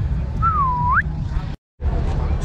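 A short whistled note, a single pure tone that dips slightly and then sweeps sharply upward, over a steady low outdoor rumble. Near the end the sound drops out completely for a moment.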